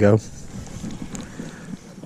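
Wind buffeting the microphone: a steady low rumble, with a faint tick about a second in.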